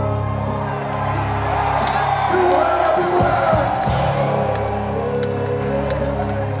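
Live band music played loud over an arena sound system, with a steady bass line, and crowd voices and cheers mixed in over it.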